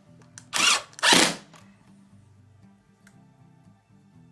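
Cordless drill-driver run in two short bursts about half a second apart, driving screws into a plastic drawer-corner fitting. Faint background music follows.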